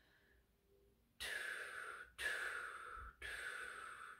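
A person blowing a steady stream of air through pursed lips, cut into separate notes by tongue strokes. Three about-one-second breaths start sharply, one after another, beginning about a second in. This is recorder tonguing practised without the instrument.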